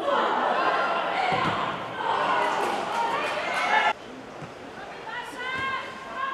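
Several voices shouting and calling out over each other on a football pitch, with a couple of thuds. The sound cuts off suddenly about four seconds in, then single shouted calls follow.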